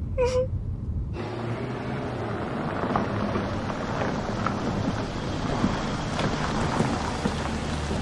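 A brief sob from a crying woman, then cars rolling slowly over a dirt and gravel drive: a steady crunching hiss of tyres on gravel over a low engine rumble.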